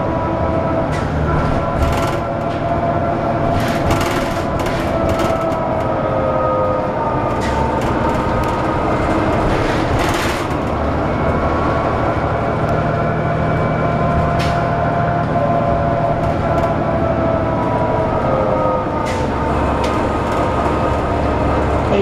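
Inside a 2002 Neoplan AN440LF transit bus under way: its Cummins ISL straight-six diesel and Allison B400R automatic transmission running, with a steady low rumble and several faint whining tones that drift slowly up and down in pitch. Frequent sharp rattles and knocks from the body and fittings sound over it.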